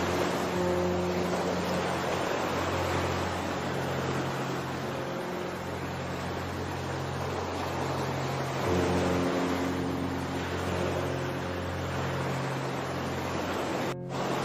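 Recorded ocean surf as a steady wash, mixed with slow music of long, sustained low chords; the chord changes a little over halfway through.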